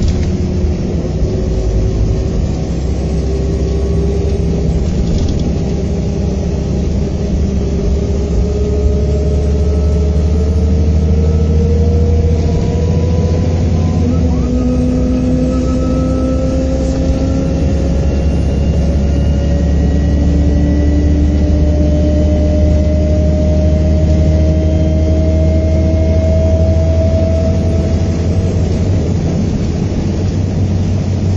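A Volvo B7R coach's six-cylinder diesel and drivetrain heard from inside the saloon on the move: a steady low rumble with a whine that climbs slowly as the coach gathers speed. The tones shift about halfway through.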